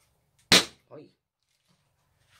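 A sharp snap as a small egg-shaped trinket box is clicked shut in the hands, followed by a much fainter brief sound.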